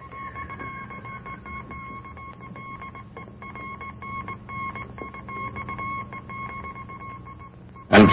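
Morse code beeps from a wireless telegraph key, a steady tone keyed on and off in dots and dashes as a warning message is tapped out, over a low steady hum.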